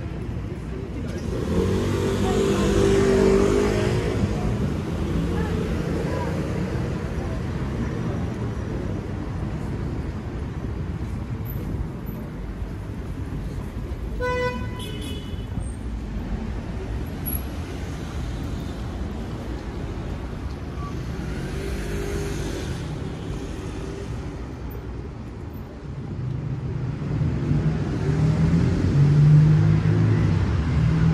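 City street traffic running steadily, with vehicles passing, louder near the start and again near the end. A car horn gives one short toot about halfway through.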